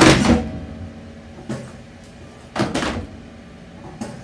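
Returned books sliding down a library book-drop chute and landing in the wooden collection bin below. There are three clattering drops: the loudest at the start, a lighter one about a second and a half in, and another near three seconds.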